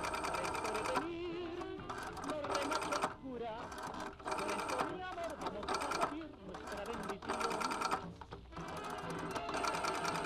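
A rotary telephone dial being turned and let go digit after digit as a number is dialed. Each return of the dial is a short run of rapid clicks, several in a row with brief pauses between them.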